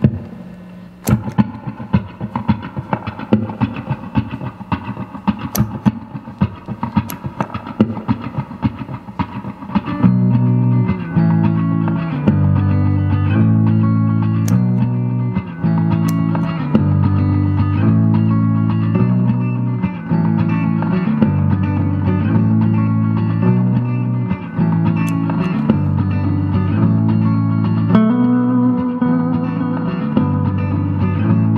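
Electric guitar, a Fender American Performer Telecaster on both pickups together through a 1967 Fender Super Reverb amp, building up parts on a looper. It opens with sparse, choppy picked notes; about ten seconds in it gets louder as a repeating low riff comes in under further playing.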